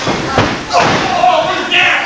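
Heavy thuds of wrestlers' bodies hitting the wrestling ring mat, a couple of them in the first second, under loud shouting voices.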